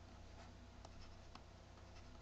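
Faint scratches and light ticks of a pen stylus on a graphics tablet as letters are written, a few small strokes over near-silent room tone.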